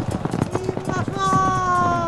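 Sound effect of horses' hooves clattering at a gallop, as of mounted troops charging. About a second in, a long held call begins over the hoofbeats, falling slightly in pitch.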